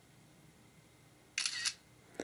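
iOS camera shutter sound played once through the iPod touch's small speaker about one and a half seconds in, a short two-part click as a photo is taken.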